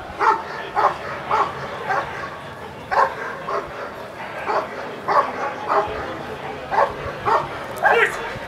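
German Shepherd barking repeatedly at the helper in a protection exercise: about a dozen short, sharp barks, roughly two a second, with brief pauses.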